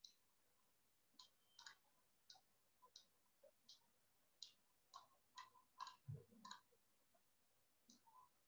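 Faint series of computer mouse clicks, about a dozen short, sharp clicks at roughly two a second, with one soft low thump about six seconds in.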